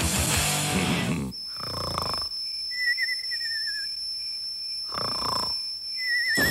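Rock music with electric guitar cuts off about a second in. It is followed by a sound-effect bed: a thin steady high tone, a wavering, warbling whistle-like tone, and two short noisy swells.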